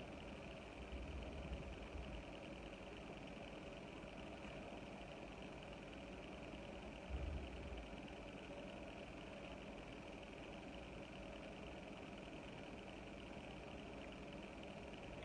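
Quiet room tone: a faint steady hum and hiss, with one soft low thump about seven seconds in.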